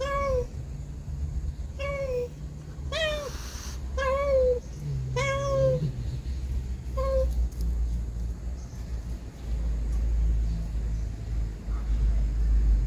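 Mother cat meowing repeatedly, about six short pleading calls roughly a second apart that stop about seven seconds in. A low steady rumble follows in the last few seconds.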